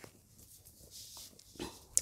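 Mostly quiet, with faint rustling of cotton fabric being smoothed by hand on a table.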